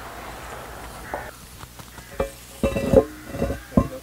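Cast-iron manhole cover on a septic tank being pried up and lifted, giving a series of metal knocks and short ringing scrapes in the second half.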